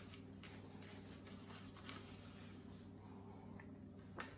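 Faint rubbing and rustling of a paper towel wiping a plastic Kydex holster, with a few light handling ticks, over a steady low hum.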